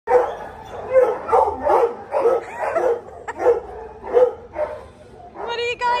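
A small beagle-type dog barking and yipping in a string of short barks, about two a second, then giving a longer whining cry near the end.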